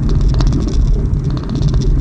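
Inside a car cruising slowly in fourth gear: a steady low rumble of engine and road noise.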